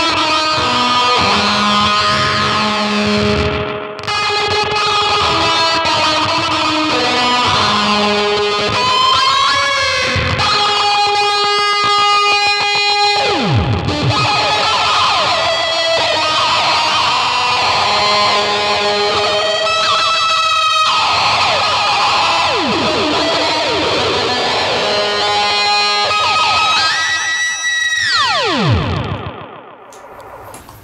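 Telecaster electric guitar played through a Mantic Flex fuzz pedal and an EHX Canyon delay into a 1964 blackface Fender Champ amp: sustained fuzzy notes washed in delay repeats. Twice there are siren-like swoops falling steeply in pitch, about halfway through and near the end, before the sound drops away.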